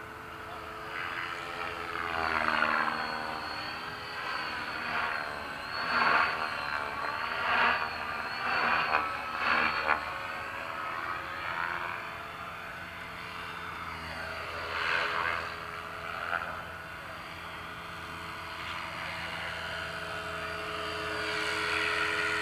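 Electric RC helicopter (Align T-Rex 550) and RC planes in flight, their motors and rotors whining steadily. Several swelling, sweeping passes come in the first half and another about fifteen seconds in.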